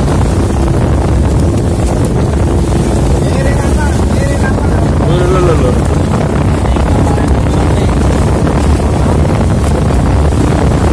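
Engine of a small outrigger boat running steadily under way, with wind buffeting the microphone and water rushing past the hull.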